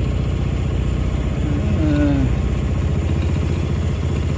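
Mokai motorized kayak's small engine idling steadily, an even low drone.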